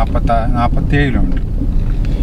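A person talking over the steady low rumble of a car driving, heard from inside the moving car.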